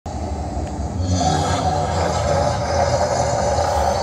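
Gas flame jets roaring from the mouths of a giant fire-breathing dragon sculpture, a loud steady rumble that swells about a second in.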